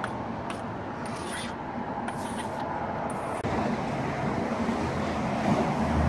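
A steel mortar striker drawn along fresh mortar joints between bricks, giving a few short scraping strokes in the first half, over a steady hum of background traffic.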